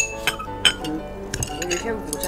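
Spoons and chopsticks clinking against small porcelain bowls during a meal: a few sharp clinks with a brief ring, the loudest at the very start, over background music.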